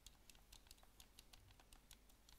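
Near silence with faint, irregular light clicks, about five or six a second, like typing on a computer keyboard.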